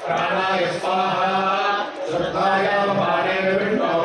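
Male priests chanting Sanskrit Vedic mantras together in a steady recitation, with a short breath break about two seconds in.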